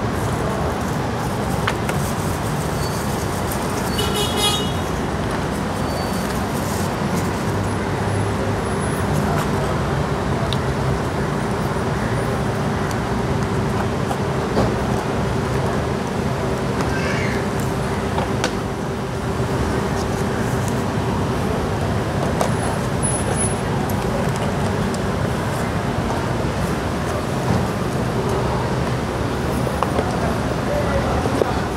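Steady outdoor road traffic noise with a continuous low hum through the middle of the stretch, and a few brief high tones around four seconds in.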